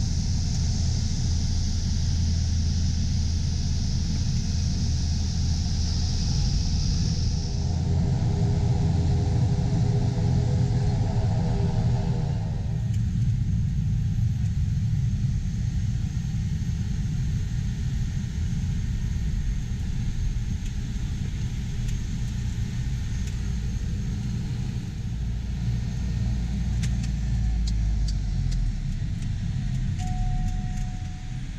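Cabin noise of a single-engine propeller plane landing and taxiing: a steady, loud engine and propeller drone. A high hiss drops away about seven seconds in. A pitched engine note stands out for a few seconds after that, before the drone settles lower.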